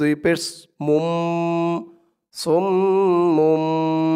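A man's voice holds a long, steady nasal hum on the doubled mim of صُمٌّ (summ): the ghunna, the obligatory nasalisation of a mim with shadda in Quran recitation. The hum comes twice, first for about a second and then for about two seconds near the end.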